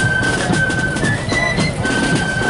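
Marching flute band playing a tune: high flutes holding notes that step from one pitch to the next, over steady drum beats.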